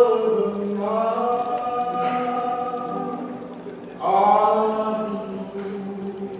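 Male vocal group singing a worship song in harmony, holding long chords; a new, louder phrase starts about four seconds in.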